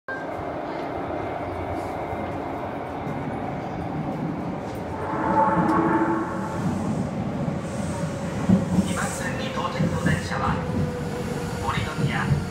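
Linear-motor subway train approaching an underground platform: a steady rumble that swells about five seconds in, with a faint steady whine that sinks slightly in pitch. A voice is heard over it in the second half.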